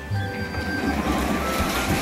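Plastic wheels of a toy stroller rolling and rattling over a hardwood floor, a continuous rough rumble, with background music playing over it.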